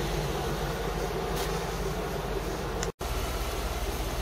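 GMC pickup truck's engine idling steadily, heard close by. The sound cuts out for an instant about three seconds in.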